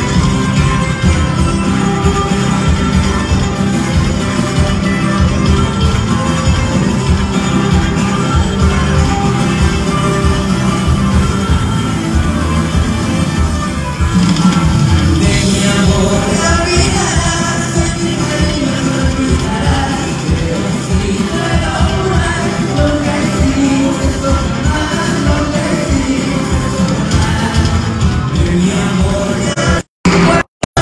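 Live band music played over a PA, with acoustic guitars and a singer, heard loud and full from among the audience.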